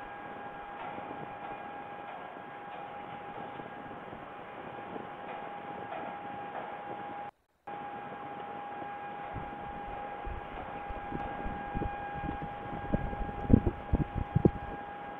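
Steady hiss with a constant whine from the nest-box webcam's microphone, cut by one brief dropout about halfway. In the second half come irregular low thumps and knocks, growing louder near the end, as a peregrine falcon tears at prey on the gravel floor of the nest box.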